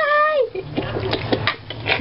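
A short high call falling in pitch at the start, then several light clicks and taps of a metal hand grater against the pan as cheese is grated over the pasta.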